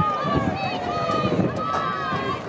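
Many voices shouting and calling over one another from lacrosse players on the field and the team on the sideline, with a few faint sharp clicks among them.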